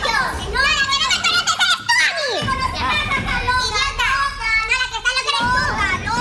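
Women shouting at each other in a heated argument, their high-pitched voices overlapping with hardly a pause.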